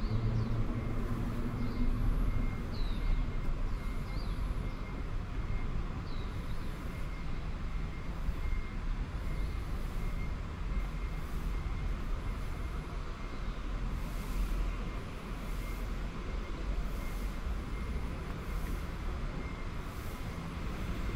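Outdoor ambience of steady low traffic rumble, with a few short descending bird chirps in the first several seconds and a faint high-pitched beep repeating throughout.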